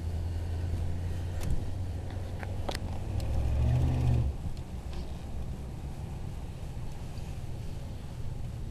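A 1991 Cadillac Brougham's V8 and tyres heard from inside the cabin at low speed: a steady low rumble that swells and rises in pitch for about a second midway as the car accelerates, then eases off. A couple of light clicks come before the swell.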